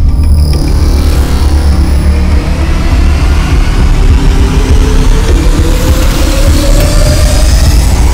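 Trailer sound design: a loud, dense low rumbling drone, with a tone that rises slowly through the second half as it builds.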